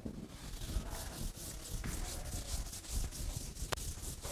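Handwriting on a writing surface: a fast run of short scratchy strokes, with a sharp tap near the end.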